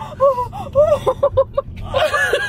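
A woman laughing hard without words: a few long gasping breaths, then about a second in a quick run of short laugh pulses, over the low rumble of the car on the road.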